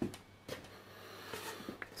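Quiet room tone with a few faint ticks, broken by a brief dead gap just after the start.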